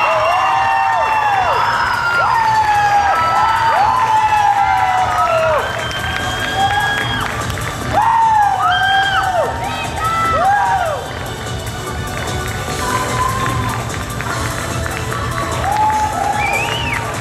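Theatre audience cheering, with many high-pitched shouts and whoops rising and falling over one another. Loudest in the first few seconds and again about eight seconds in, then easing off.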